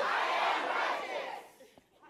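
Church congregation shouting a phrase back together in call-and-response, most likely "I am righteous" as prompted, a mass of overlapping voices that dies away after about a second and a half.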